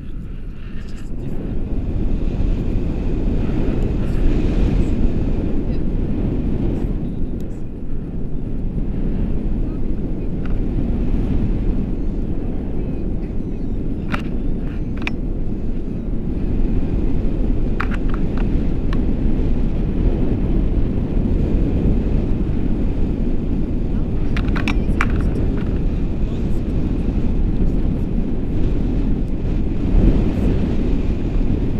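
Wind rushing over a selfie-stick action camera's microphone in flight under a paraglider: a steady, loud, low rumble from the airflow of the glide.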